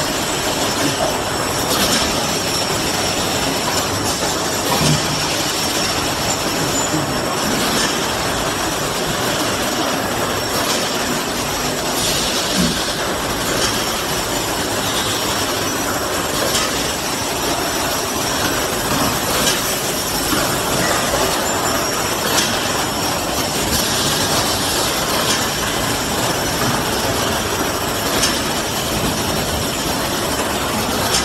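Automatic edible-oil bottle filling line running: a steady mechanical clatter from the filler and conveyors, with a faint high whine and occasional short clicks.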